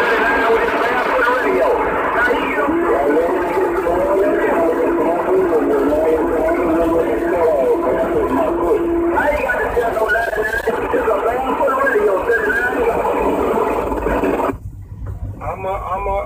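CB radio reception with two or more stations transmitting over each other at once: garbled, overlapping voices, with a steady whistling tone from about three to nine seconds in. The combined signal cuts off suddenly about a second and a half before the end, leaving weaker reception.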